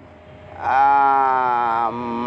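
A man's voice holding one long, steady vowel for about a second after a brief pause.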